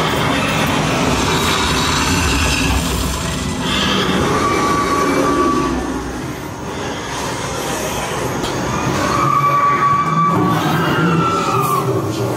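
Haunted-house attraction soundtrack at high volume: a continuous rumbling, clattering din, with a long high-pitched screech about four seconds in and another around nine seconds that slides downward near the end.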